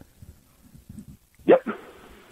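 A short lull with only faint low background noise, then about one and a half seconds in a brief spoken "yep" over a telephone line, thin and cut off in the highs.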